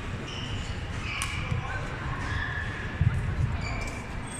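Badminton rally: sharp racket strikes on the shuttlecock about a second in and again near the end, with sneakers squeaking and thudding on the court floor, over the chatter of spectators in the hall.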